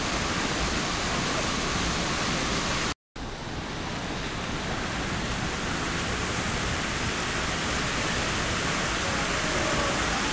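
Steady rushing of water running down a bowl water slide, cutting out for an instant about three seconds in.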